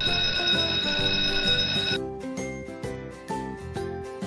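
A school bell ringing steadily for about two seconds, then cutting off, over light children's background music.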